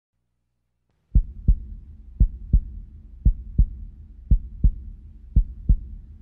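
Heartbeat sound effect: slow paired low thumps, lub-dub, about one pair a second over a faint low drone, starting about a second in.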